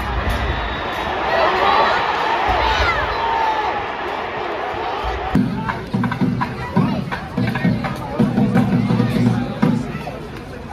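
Stadium crowd noise with many voices shouting at a soccer match. About five seconds in it cuts to background music with a steady low beat.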